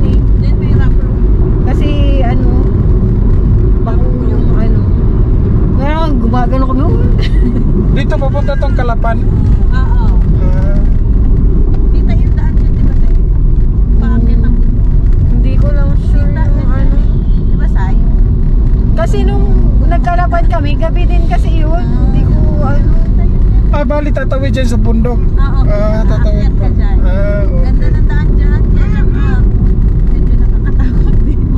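Steady low rumble of a car driving on a concrete road, heard from inside the cabin, with people talking over it throughout.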